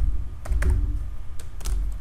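Typing on a computer keyboard: a handful of irregularly spaced keystrokes over a low hum.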